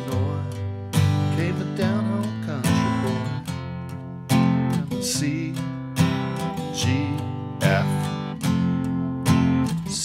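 Steel-string acoustic guitar strumming a chord progression in a bass, bass, down, down, up pattern, with a strong strum about once a second. A melody is hummed faintly over it.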